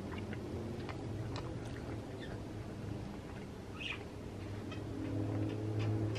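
A caged pet bird chirping faintly a few times over a steady low hum, with light ticks of small hands and food on a plastic high-chair tray.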